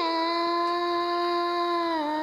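A young girl singing into a microphone, sliding down onto one long held note that stays steady.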